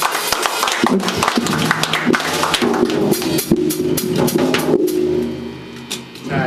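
Emo-punk band playing live: a drum kit with dense cymbal crashes and hits under electric guitars. They end the song on a held chord that rings on and fades out shortly before the end.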